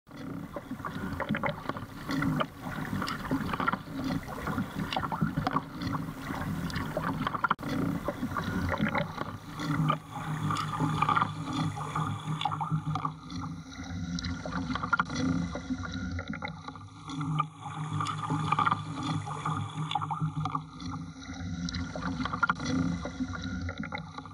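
Water splashing and lapping against a kayak hull as it moves across choppy open water, irregular and continuous, with a steady low hum running underneath that grows plainer partway through.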